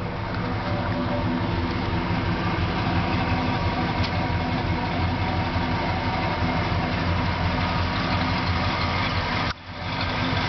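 A 1992 Ford E-150 van engine idling steadily. The sound cuts out briefly near the end, then resumes.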